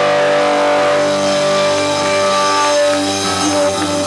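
Live indie rock band holding a sustained chord that rings steadily, without a drum beat.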